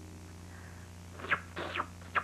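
A low steady hum, then about a second in a few short wet mouth sounds: a cartoon character sucking and smacking cake icing off his finger.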